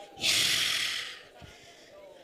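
A loud, breathy rush of air into a close handheld microphone, about a second long: a person's huffed breath.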